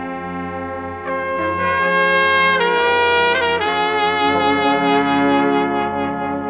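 Serbian brass band (fanfare) playing long held chords on trumpets and lower brass over a steady bass note, swelling louder about a second in and moving to new chords a few times in the middle.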